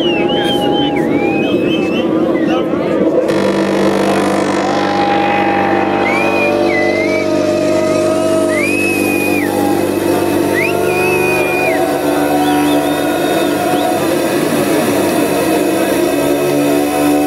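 Electronic club music playing loudly through a PA in a sustained, beatless passage of held tones, with a deeper note entering about three seconds in. Crowd voices and high gliding tones, like whistles, recur over the top.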